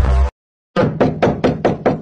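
Background music stops abruptly. After a brief dead gap comes a fast, evenly spaced run of knocking hits, about five a second.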